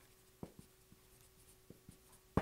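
Marker writing on a whiteboard: a few faint taps and short strokes, the first about half a second in and two more near the end, in near silence with a faint steady hum.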